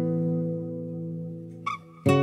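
Background acoustic guitar music: a strummed chord rings and slowly fades, with a short squeak near the end just before the next strum.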